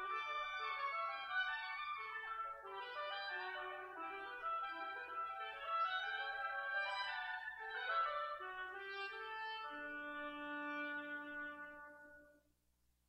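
Two woodwinds playing a duet, two melodic lines moving note by note together. About ten seconds in they settle on long held notes.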